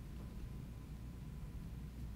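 Quiet room tone: a faint, steady low hum with no distinct sound from the hands or tools.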